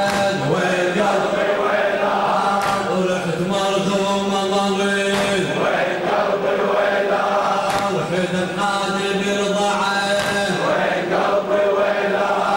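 Men's voices chanting a Shia Muharram latmiya lament in unison, in long held notes. A sharp beat comes about every two and a half seconds.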